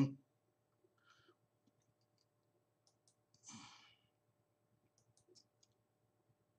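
Faint computer mouse clicks, a few close together near the end, with a short breathy exhale about halfway through.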